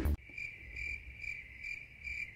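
Cricket chirping sound effect, a steady high trill pulsing about twice a second. It is the comic cue for an awkward silence where nothing is happening.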